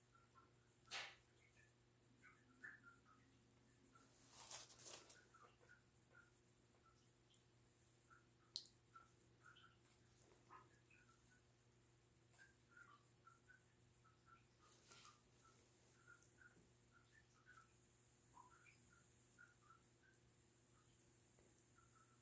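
Near silence: quiet handling sounds of fingers working soft clay, with a few soft knocks and a brief rustle. Faint short high chirps come and go throughout.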